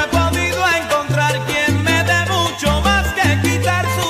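Salsa romántica music in an instrumental passage without singing, carried by a bass line that moves every half second or so.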